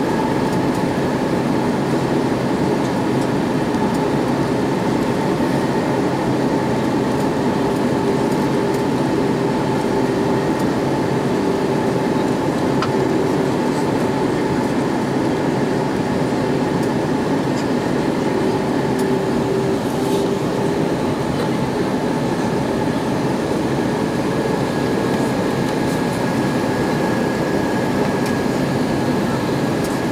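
Airbus A320-232 in flight, heard inside the cabin by the wing: a steady rush of air and the drone of its IAE V2500 turbofan, with a few faint steady engine tones held throughout.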